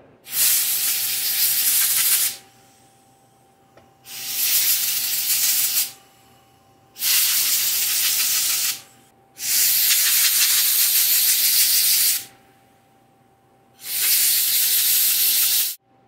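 Compressed-air blow gun blasting through a small felt air filter to clear the dust from it, in five bursts of about two to three seconds each with short pauses between.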